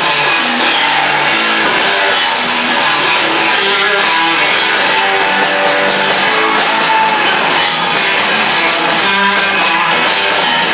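Live blues-rock band playing: electric guitar over bass guitar and drum kit, loud and steady, with sharp percussive strokes growing denser from about halfway.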